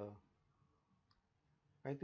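A man's voice trails off into a pause of near silence, broken by one faint click about halfway through, and the voice starts again near the end.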